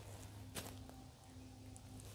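Quiet background with a steady low hum and a single faint tap or click about half a second in.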